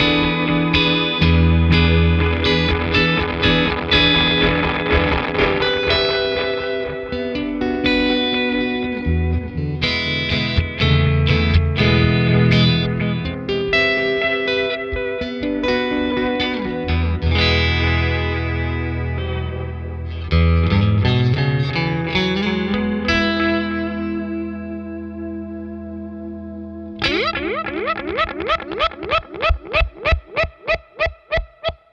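Electric guitar played through a Chase Bliss Thermae analog delay/pitch shifter into a Fender Deluxe Reverb reissue amp: picked notes and chords trailing delay echoes with a wavering modulation. About two-thirds through, a low note glides upward in pitch. Near the end a note breaks into a quick train of fading echoes that bend in pitch.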